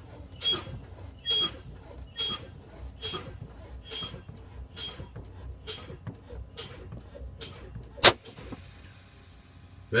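Truck air brake pedal pumped about once a second, each application and release letting out a short puff of air. About eight seconds in, a sharp crack and then a hiss of escaping air as the pressure drops far enough for the automatic spring brakes to apply.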